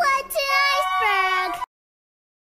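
A very high-pitched voice singing in drawn-out, wavering notes, cut off suddenly about one and a half seconds in.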